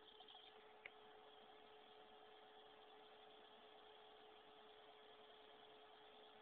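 Near silence: a faint steady hum over low hiss, with one small tick about a second in.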